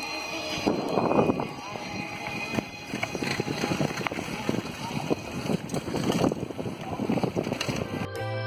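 Wind buffeting a phone microphone and dense rattling and knocking as a bicycle rolls fast over a dirt road, with faint voices of other riders.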